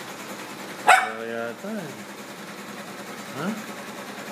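A Lhasa Apso barks once, sharply, about a second in.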